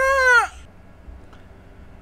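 A person's drawn-out cry of disgust, a gagging "eww" whose pitch rises and then falls, lasting about half a second at the start; faint room tone follows.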